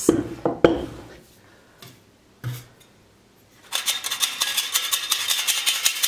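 A few sharp knocks of a wooden rolling pin on a wooden pastry board. After a pause, starch is shaken over the dough, making a dense, steady rattle for the last two seconds or so.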